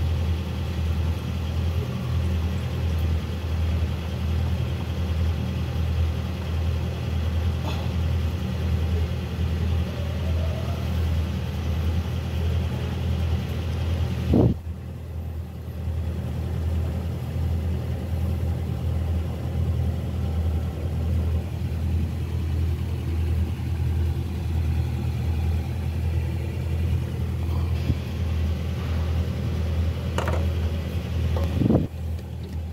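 An engine idling steadily with a low, evenly pulsing rumble. About halfway through there is a single knock, and the sound dips for a second or so.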